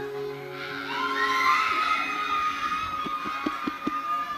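A woman's long, high-pitched shout of joy, starting about a second in and held to the end, over a cheering congregation.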